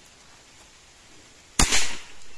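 A single shot from a CBC B57 .177 (4.5 mm) PCP air rifle: one sharp crack with a short tail, about a second and a half in.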